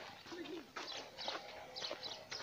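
Footsteps on a dirt road: a few uneven steps on loose earth and grit, fairly quiet.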